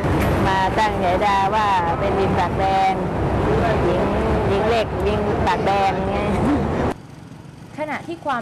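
A woman talking over steady street traffic noise. The traffic noise and her voice cut off suddenly about seven seconds in, leaving a much quieter background.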